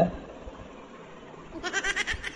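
Faint room tone, then about one and a half seconds in a short, loud comic sound effect starts: a rapid, pulsing, high-pitched cry.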